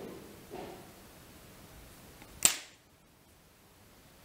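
Hands handling a fly in a tying vise make soft rustles, then a single sharp snap about two and a half seconds in that dies away quickly.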